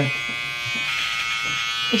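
Electric beard trimmer buzzing steadily as it cuts through a thick beard.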